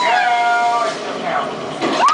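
High-pitched squeals from riders strapped into a launch-tower thrill ride, waiting to be shot up. One long drawn-out squeal fills the first second, followed by shorter squeals.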